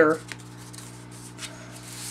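Cardstock rustling and sliding under hands as a folded paper piece is positioned and pressed flat onto a card base, with a faint steady hum behind it.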